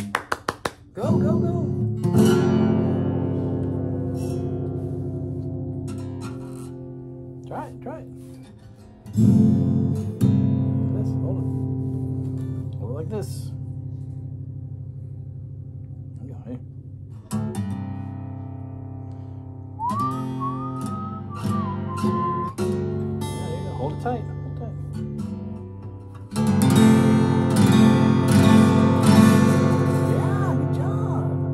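Acoustic guitar strummed by a learner, each chord left to ring and die away slowly. There is a quick flurry of strums at the start, fresh strums every few seconds, and a busier run of strumming near the end.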